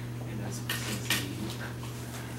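Dry-erase marker writing on a whiteboard: a couple of short, sharp strokes, the loudest about a second in, over a steady low room hum.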